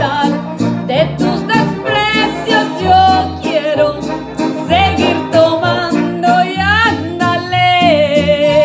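A woman singing a Latin song with vibrato into a handheld microphone over a karaoke backing track with a steady bass line.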